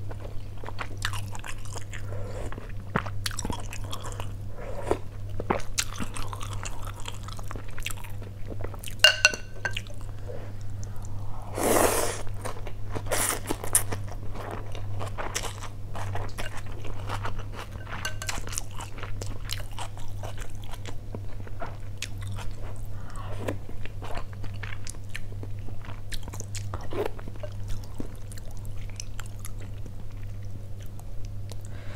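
Close-up eating sounds of a person working through a bowl of noodle soup: wet chewing, biting and crunching, with many small mouth clicks and slurps of noodles. One louder slurp comes near the middle, and a brief squeaky sound a few seconds before it. A steady low hum runs underneath.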